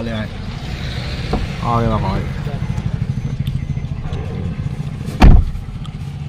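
A car's engine and road noise, a steady low hum heard from inside the cabin. A single loud thump about five seconds in.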